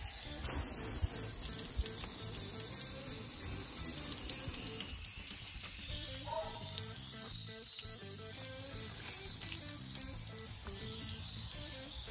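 A garden hose spray nozzle rinses toilet bowl cleaner off a fiberglass boat hull: a steady hiss of water spray, under background music.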